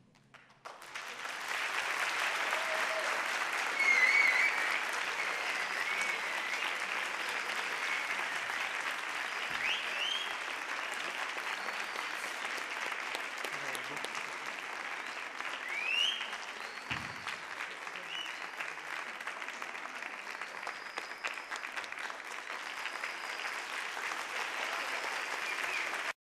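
Concert audience applauding at the end of an orchestral performance, starting about a second in and holding steady, with a few cheers rising above the clapping.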